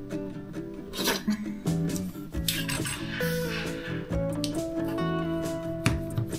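Background music with sustained notes, over which a metal utensil clinks and scrapes a few times against a metal loaf pan, about a second in and again near the end.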